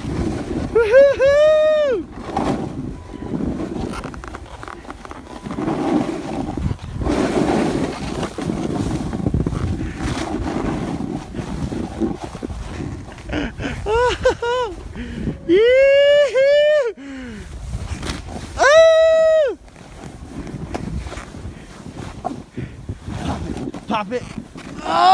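Snowboard sliding and carving through powder snow, a steady rushing scrape. High whooping yells from the rider break in near the start and several times in a cluster past the middle.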